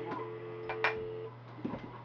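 Telephone handset dial tone, a steady two-note tone heard with the phone held away from the ear, cut off after about a second just after a couple of sharp clicks from the handset. A steady low hum sits underneath.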